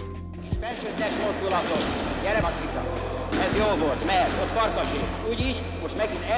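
Music ends about half a second in, giving way to men's voices calling out in an echoing gym, with several separate thuds of footballs being kicked and bounced during ball-juggling practice.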